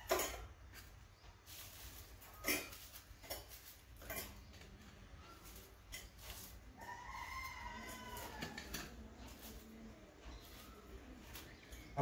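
Crisp toast being snapped by hand and dropped into a stainless-steel mixer-grinder jar: faint scattered cracks and taps. A faint drawn-out animal call, about two seconds long, comes near the middle.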